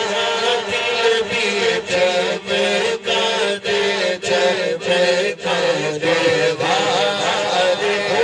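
A man singing a naat, an Urdu devotional hymn, in a wavering, ornamented melody into a microphone, with no instruments, over a steady low drone held by a second voice.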